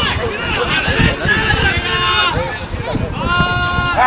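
Spectators' voices calling out over the match, ending in one long held shout near the end.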